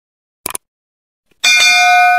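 A short click, then about a second later a bright electronic bell chime rings with several steady tones for about a second: a notification-bell sound effect.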